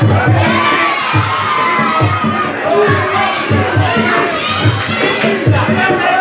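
Fight crowd shouting and cheering, many voices yelling over one another, with a regular low beat underneath at about two thumps a second.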